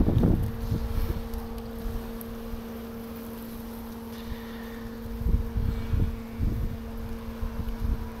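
Wind buffeting the microphone in gusts, over a steady low hum of honeybees from the opened hive.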